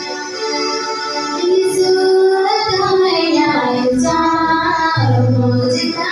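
A hymn sung by voices over instrumental accompaniment, with a low bass line coming in about four seconds in.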